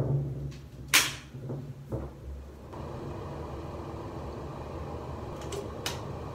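A door being opened, with a sharp click of the latch about a second in and a smaller knock just before two seconds. About three seconds in, a steady low rushing sound starts and carries on, with a faint click near the end.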